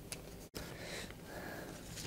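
Quiet room tone with a soft click, then a brief, faint breathy sound like a sniff or intake of breath about a second in.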